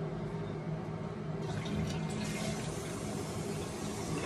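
Water running steadily with a low hum under it; the hiss grows brighter about halfway through.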